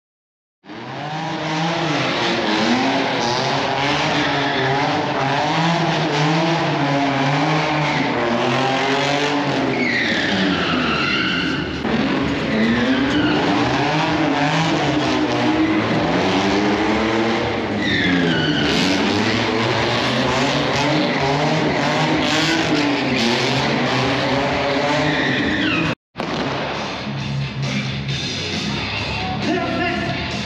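Stunt cars' engines revving up and down with repeated tyre squeals as the cars skid through the arena; the squeals come at about 10, 18 and 26 seconds.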